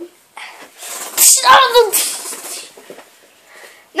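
A child's loud wordless vocal outburst: a breathy, hissing rush building about a second in, breaking into a voiced cry that falls in pitch and fades by about two and a half seconds in.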